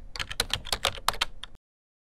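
Computer keyboard typing: a quick run of key clicks, about seven a second, that stops about one and a half seconds in, as text is typed into a search bar.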